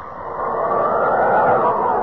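Radio sound effect of rushing wind, the whoosh of Superman flying, swelling up over the first half second and then holding steady.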